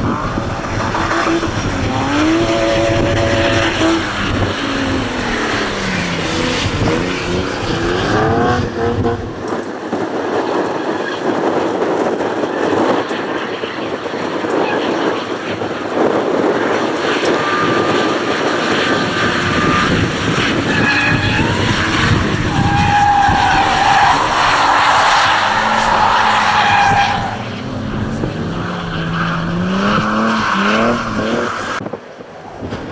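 Two drift cars sliding in tandem: engines revving up and down with tyre squeal and skidding noise, and a long steady tyre squeal in the later part.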